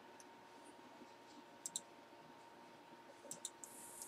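Near silence: room tone with a few faint, sharp clicks, a close pair about a second and a half in and a few more near the end, followed by a brief soft hiss.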